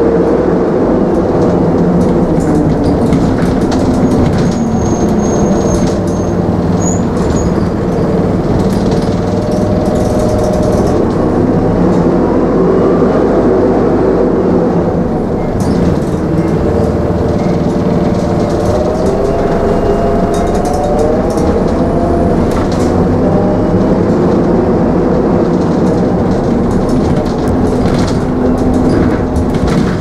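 Optare Solo midibus heard from inside the saloon while under way: steady engine and road noise with short rattles from the body. The engine note glides down a few seconds in and rises again twice later as the bus slows and speeds up.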